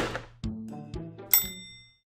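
Short musical logo sting of struck, pitched notes, ending with a bright, ringing metallic ding about a second and a third in that fades away.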